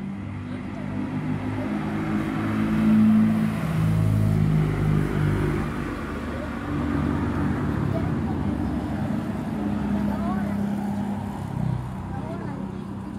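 Motor vehicle engines running and passing on the roadside, loudest about three to five seconds in, under people talking.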